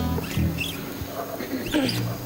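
Church band in a lull of a song intro: a couple of low bass notes, then faint squeaky gliding sounds near the end, between a held chord and the next guitar strums.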